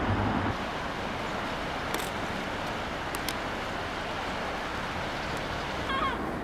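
Outdoor street ambience: a steady wash of distant road traffic, with a low vehicle rumble fading out about half a second in and a few faint clicks.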